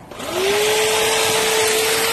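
Electric motor of a garden power tool starting up: a whine that rises in pitch for a moment about a quarter second in, then runs steadily with a hiss.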